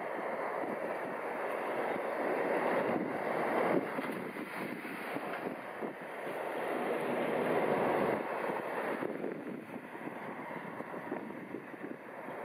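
Wind rushing on the microphone by open water, an unsteady noise that swells twice, around three and again around seven seconds in.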